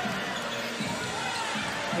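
Basketball game sound in a large arena: a steady crowd murmur, with a basketball being dribbled on the hardwood court.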